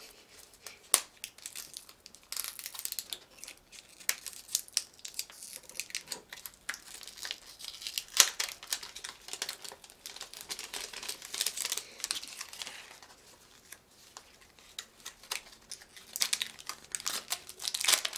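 Clear plastic wrapping crinkling and tearing as small toy capsules are unwrapped by hand, a continuous run of crackles and short rips.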